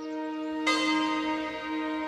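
A large bell struck once, about two-thirds of a second in, ringing on and slowly fading over a held ambient-music drone.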